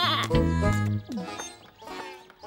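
Cheerful children's theme music with held bass notes, and a cartoon lamb's bleat falling in pitch about a second in; the music quietens in the second half.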